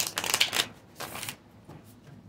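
A tarot deck shuffled by hand, the cards fluttering against each other in a rapid crackle: a longer burst in the first half-second, then a shorter one about a second in.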